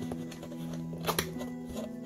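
Background music with held notes, over hands handling a cardboard toy box; a short sharp scrape or tear of the cardboard sounds about a second in as the box is opened.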